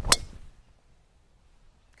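Golf driver striking a ball off a tee: one sharp crack right at the start, fading within about half a second, the sound of an extremely well-struck drive.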